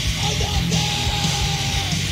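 Hardcore punk band playing loud and dense: distorted electric guitar, bass and drums, with a long held note from about a second in until near the end.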